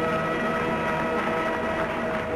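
Cabaret dance-orchestra music on an old newsreel soundtrack: a held chord of several steady notes that fades near the end.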